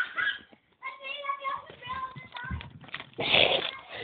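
Brief voice-like sounds without clear words, then a loud rustle about three seconds in as the paper wrapper of a bubble gum card pack is handled and pulled open.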